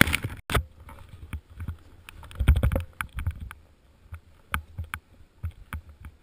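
Burton snowboard scraping and crunching over snow in irregular bursts as the rider gets moving, the loudest about two and a half seconds in, with many short knocks and rubs on the body-mounted camera.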